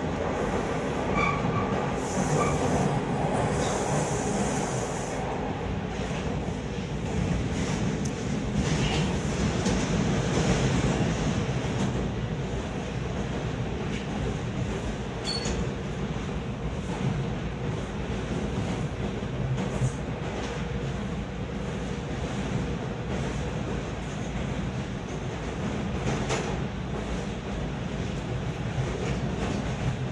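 Bombardier T1 subway train running at speed, heard from inside the car: steady wheel-on-rail noise under a constant motor hum, with a few brief high squeals in the first couple of seconds.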